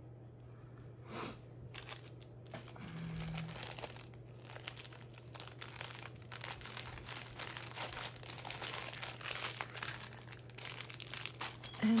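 Clear plastic packaging bags crinkling and rustling in irregular bursts as craft trims are handled and set down.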